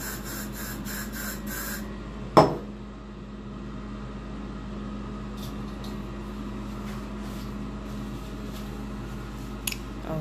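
Bathroom ceiling exhaust fan running with a steady hum. A run of quick ticks in the first two seconds, and one sharp knock about two and a half seconds in.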